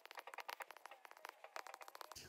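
Faint, irregular ticks and taps of a stylus writing on a tablet screen.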